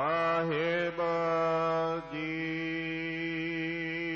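A man's voice chanting in long, held notes with a slight waver in pitch, breaking off briefly about a second in and again about two seconds in: a Sikh devotional chant.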